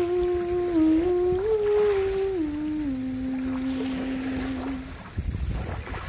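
A woman humming a slow melody of long held notes that step up and then down in pitch, stopping about five seconds in, over the faint wash of sea waves. A low rumbling surge of the water follows near the end.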